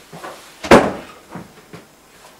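A single loud bang about three-quarters of a second in, like a door or cupboard shutting, followed by a few faint knocks.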